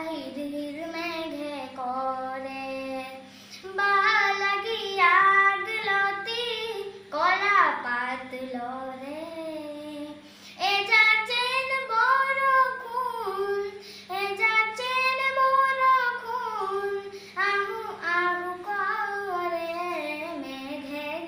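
A nine-year-old boy singing a song unaccompanied into a handheld microphone, in long held notes that waver in pitch, with short pauses between phrases.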